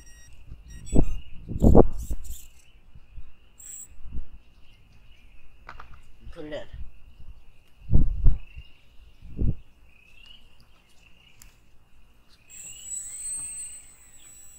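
Knocks and bumps from an RC airboat being handled on a wooden dock, over a faint continuous high chirping. Near the end, a steady high-pitched whine begins as the airboat's electric motor and propeller spin up.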